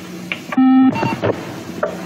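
Atari home computer beeping: a low, buzzy beep of under half a second, then a short higher blip.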